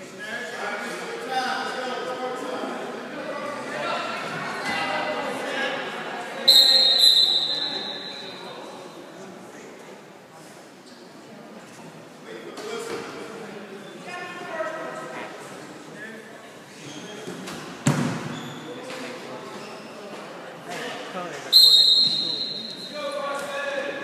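Two short, loud, high-pitched referee's whistle blasts, about six and twenty-one seconds in, and a single sharp thud about eighteen seconds in, over scattered voices echoing in a large gym.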